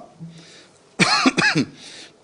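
A man clears his throat with a short voiced 'ahem' about a second in, after a brief low hum.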